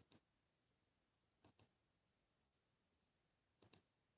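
Three faint double clicks, each a pair of quick clicks close together, coming about every one and a half to two seconds over near silence.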